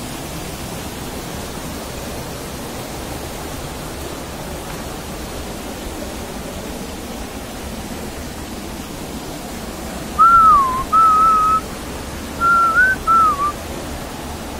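Mountain stream rushing and cascading over boulders, a steady rush of water. About ten seconds in, someone whistles four short swooping notes, louder than the water.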